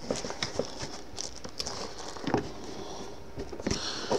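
Handling noise of papers, plastic packaging and small items being put back into a foam-lined plastic gun case: light rustling and crinkling with scattered soft clicks and taps.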